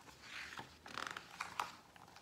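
A page of a hardcover picture book being turned: soft paper rustles and swishes in the first second and a half.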